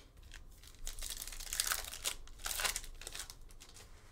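Foil wrapper of a basketball trading-card pack being torn open by hand, rustling in a run of short bursts from about a second in until about three seconds in.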